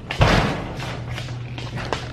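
A bang on a metal roll-up storage-unit door, ringing and echoing briefly along the hallway, followed by fainter footsteps.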